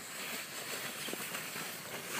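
Plastic sled sliding over snow: a faint, steady swishing hiss with a few soft crunches in the snow.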